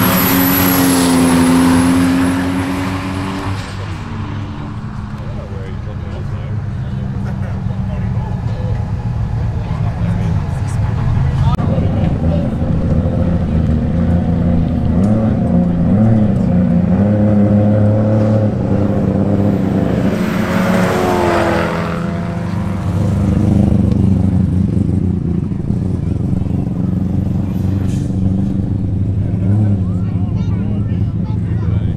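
Performance cars' engines accelerating hard in side-by-side roll races: engine notes rise in pitch through the gears in several runs, loudest near the start and again later on.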